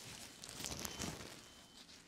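Thin plastic isolation gown rustling and crinkling as it is pulled over the head and settled onto the shoulders. It is loudest about half a second to a second in.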